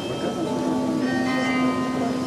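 Tower carillon playing: several bells ringing together, with a low bell struck about half a second in and ringing on beneath the higher ones.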